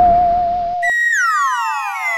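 Electronic comedy sound effect: a single wavering whistle-like tone for under a second cuts off, and a bright synthesized tone takes over and splits into many pitch glides falling together.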